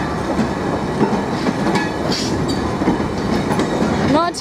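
Yeoman stone hopper wagons of a freight train rolling steadily past, their wheels rumbling and clattering over the rail joints with scattered short clicks.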